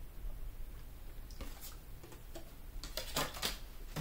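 Faint light clicks and taps of oracle cards being handled and set down on a table, a few scattered ones about one and a half seconds in and again around three seconds in, over quiet room tone.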